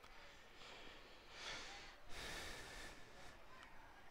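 Near silence, with two soft breaths on the commentary microphone, the first about a second and a half in and the second just after two seconds.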